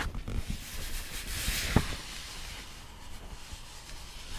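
Fingers brushing over the paper page of an open hardback picture book: a soft rustle lasting a second or two, with one light tap midway.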